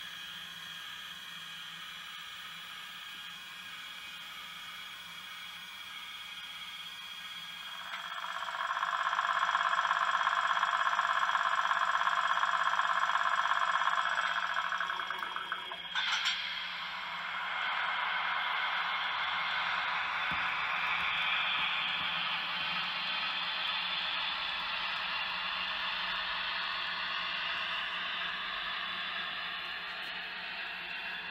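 Small electric motors of a model railway whirring during an automatic locomotive exchange by transfer table. The whir is louder for several seconds in the first half, then a sharp click follows and a steady whir runs on to the end.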